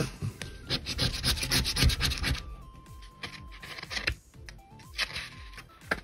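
A cardboard scratch-off lottery ticket being handled and slid across a mat, brushing off scratch-off shavings: a quick flurry of short scratchy rubbing strokes in the first two seconds, then quieter handling with a few more scratches near the end.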